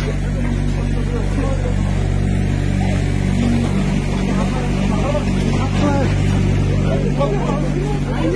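An excavator's diesel engine runs steadily, with a crowd shouting and arguing over it.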